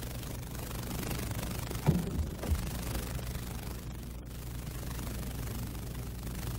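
Sports hall ambience under an old television broadcast: a steady low hum and hiss, with two short dull knocks about two seconds in.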